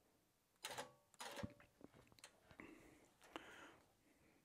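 Near silence with a few faint clicks and taps from handling a long-arm quilting machine at its handles and controls, before stitching resumes.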